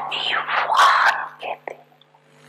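A woman speaking into a microphone in short phrases, over a steady low hum.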